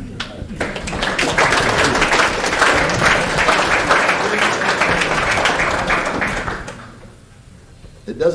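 Audience applauding, starting about half a second in and dying away around seven seconds in.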